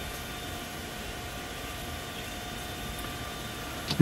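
Steady background noise: an even hiss with a few faint, steady tones and no distinct events.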